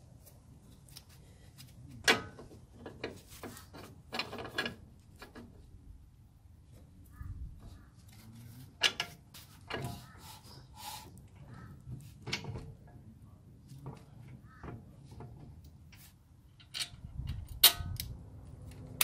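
Irregular metallic clicks and knocks of a steel steering knuckle and hub being handled and fitted onto new ball joint studs, with a sharp knock about two seconds in and a cluster of knocks near the end.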